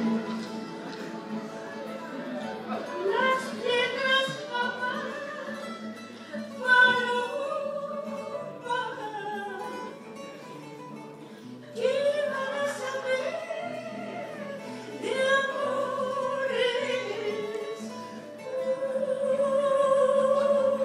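A woman singing to the accompaniment of acoustic guitars, her sung phrases broken by short pauses in which the guitars carry on.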